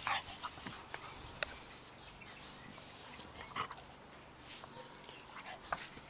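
A Welsh springer spaniel rolling and wriggling on its back in grass: quiet, scattered short rustles and brief dog noises, with no sustained barking.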